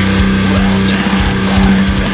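Distorted electric guitar from a Maestro SG-style guitar, played through an amplifier in a heavy metal cover, holding one low note steady over a dense low pulse.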